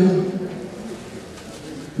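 A man's speaking voice amplified in a hall trails off in a drawn-out syllable, then a pause of quiet room tone until he speaks again at the very end.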